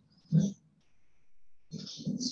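A brief voice sound, a short pitched grunt or murmur, about a third of a second in, followed by faint room sound.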